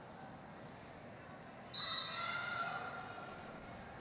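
Faint hum of a large hall, then a little under two seconds in a short, shrill referee's whistle blast starts the jam, with a brief lift in crowd noise fading after it.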